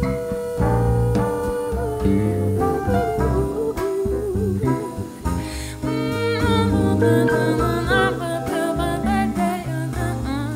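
Live jazz band playing a slow ballad, with piano, electric bass, drums, guitar and flugelhorn, and a woman's wordless vocal over the top. A long held note opens the passage, and the voice weaves more freely in the second half.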